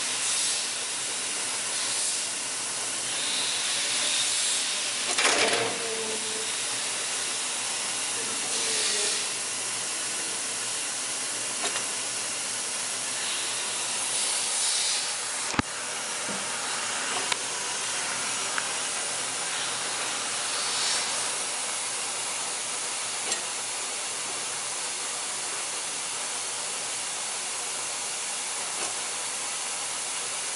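Steady hiss of an industrial dough-handling machine running, its red roller conveyor turning, with a few faint knocks and one sharp click about halfway through.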